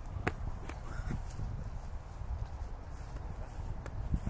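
Faint footfalls of players on a dry grass field over a low rumble, with one sharp click about a quarter second in.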